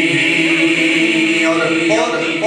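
A man's voice chanting verse, holding one long sung note that gives way to shorter sung syllables near the end.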